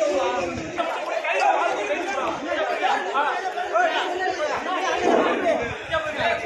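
Several men talking and calling out over one another, a continuous jumble of voices.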